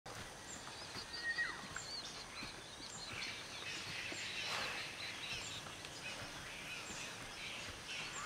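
Tropical forest ambience: several birds chirping and calling, including a short downward-sliding call a little over a second in, over a steady background hiss.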